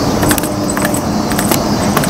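Irregular light clicking and jingling from small items carried by a person walking, over a steady hum of street traffic.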